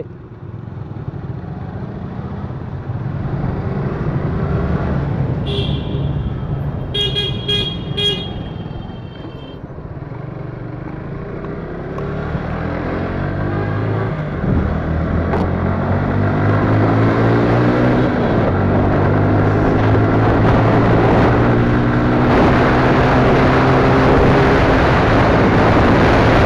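Suzuki motorcycle's engine running on the road, with a run of short horn toots about six seconds in. Over the second half the engine pitch climbs steadily as the bike accelerates, and wind noise grows.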